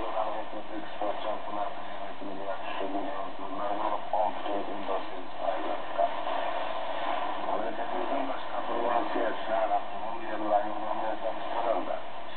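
Kyrgyz-language speech from a shortwave AM broadcast on 9705 kHz, coming from the speaker of an Icom IC-R8500 receiver. The sound is thin, with the treble cut off, over a steady background of static hiss.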